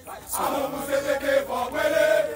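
A group of voices chanting together in unison, holding long drawn-out notes, starting about a third of a second in.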